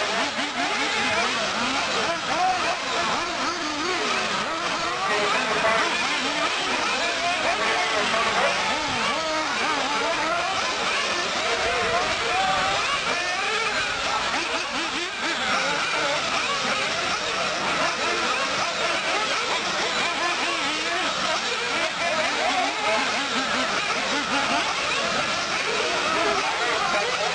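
Several radio-controlled off-road racing buggies running round the track together, their small motors whining and revving up and down in pitch without a break.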